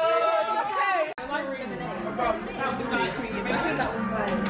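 Singing with held notes breaks off abruptly about a second in, followed by the overlapping chatter of several voices in a busy room.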